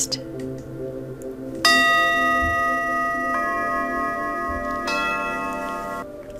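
Three struck chime tones about a second and a half apart, each ringing on, the first the loudest, over soft, steady background music.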